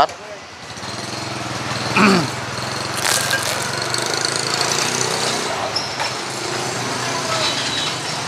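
A small engine running steadily nearby, a continuous hum with a rough edge, amid street noise; a short voice cuts in about two seconds in.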